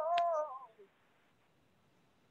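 A man's voice singing a wavering, drawn-out "oh" that fades out within the first second, followed by near silence.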